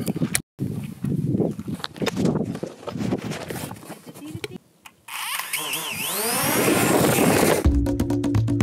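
Snatches of a man's voice, then a swelling, rising whoosh that leads into music with a steady beat near the end.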